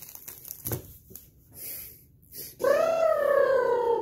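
Plastic snack wrapper crinkling and rustling with small clicks as it is handled. About two and a half seconds in comes one long, high-pitched vocal sound that rises a little and then slowly falls.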